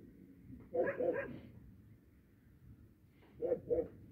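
Puppy barking: a quick run of three short, high barks about a second in, then two more short barks near the end.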